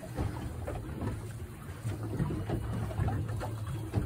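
A steady low rumble with faint rustling and small knocks as a hand line is wrapped around a folded bait net.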